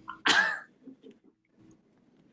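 A woman clearing her throat once: a short, sharp vocal burst about a quarter second in, followed by a few faint low murmurs.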